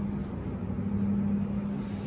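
A steady low hum with one held tone and a low rumble, under a patient's deep breaths taken on request for a stethoscope lung check.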